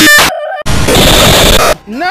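Rapidly spliced, heavily distorted edit audio: a loud pitched burst cut off sharply, a brief quieter pitched snippet, then about a second of loud harsh noise. Near the end a pitched, voice-like sound sweeps up and back down.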